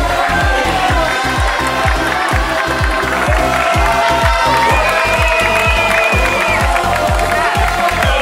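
Background music with a fast, steady beat and held melody lines.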